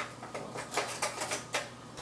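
A quick, irregular run of light clicks and taps, about eight in under two seconds: handling noise from things being moved about on a kitchen counter.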